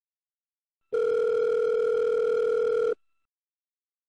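Telephone ringback tone: one steady tone lasting about two seconds, starting about a second in. It signals an outgoing call ringing at the far end, not yet answered.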